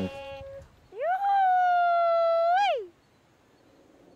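A high singing voice: one long note that slides up about a second in, holds for about two seconds, lifts slightly, then slides down and stops.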